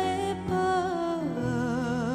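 A female vocalist sings over instrumental accompaniment. She holds one long note, then steps down to a lower note sung with a steady vibrato about halfway through.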